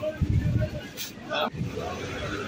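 Ambient sound at a fish market stall: faint, scattered voices of vendors and shoppers over a low rumble, with one sharp click about a second in.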